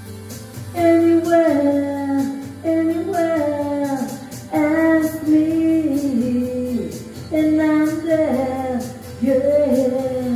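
A woman singing into a microphone over backing music, in about five phrases of held, gliding notes.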